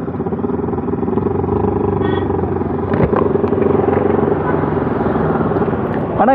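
Bajaj Pulsar NS200 single-cylinder motorcycle engine running at a steady cruising speed on the highway, with wind and road noise.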